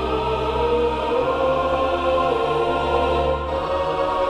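Choral music: a choir singing long held chords, with the harmony changing about a second in and again near the end.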